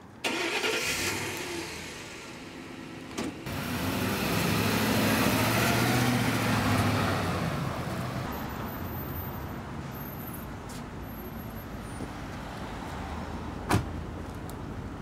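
A van's engine and tyres as it drives past on a street, growing to its loudest about five to seven seconds in and then fading away. A short click comes a few seconds in, and a sharp knock comes near the end.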